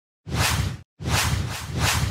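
Whoosh sound effects from an animated video intro: a short swish, then a longer one starting about a second in that swells twice.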